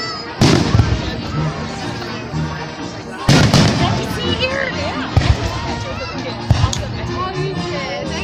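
Aerial firework shells bursting overhead: two big booms about three seconds apart, then several sharper bangs. Music plays underneath.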